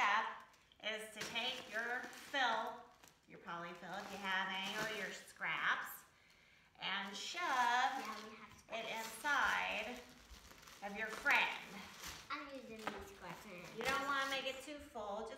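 People talking, with short pauses between phrases.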